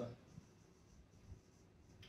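Very faint scratching of a marker pen writing on a whiteboard, with a couple of slightly louder strokes.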